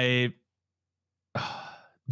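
A man sighs audibly into a close microphone, a short breath that fades out about a second and a half in. It follows the drawn-out end of a spoken "I" and a second of silence.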